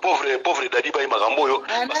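Speech only: a person talking without a break, the voice thin and cut off in the highs like a phone recording played back.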